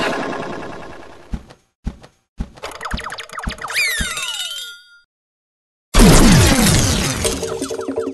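Cartoon sound effects. A few short thumps come first, then a quick run of springy effects with falling pitch glides. After a second of silence, a loud sudden burst with falling tones starts about six seconds in.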